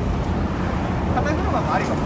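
Street noise: a steady low traffic rumble, with indistinct voices in the second half.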